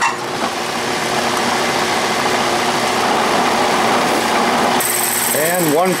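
Small Craftsman (Atlas-type) metal lathe running steadily, its four-jaw chuck spinning while a starter drill in the tailstock chuck drills into the workpiece. Near the end a high hiss joins the steady machine noise.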